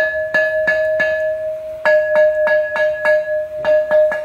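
Large painted porcelain fish bowl struck on the rim with a wooden stick, ringing with a clear, sustained bell-like tone. There are four quick taps, a pause of nearly a second while the ring carries on, then about eight more taps. A clear ring like this is typical of porcelain with no cracks.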